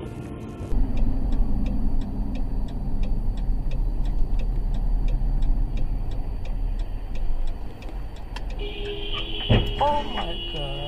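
Low engine and road rumble inside a moving car, starting abruptly under a second in, with a steady tick about twice a second. Near the end a sustained steady tone begins, then a sharp knock and a brief voice.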